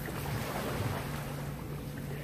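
Pool water splashing and sloshing under a swimmer's arm strokes.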